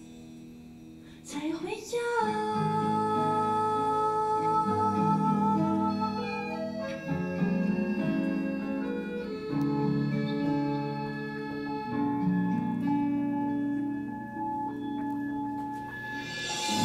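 A woman singing a slow Mandarin song in tune over instrumental accompaniment, coming in about a second in after a quieter start.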